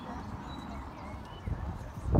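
Street background noise: a steady low rumble of traffic and wind, with faint voices of passers-by and short, thin chirps.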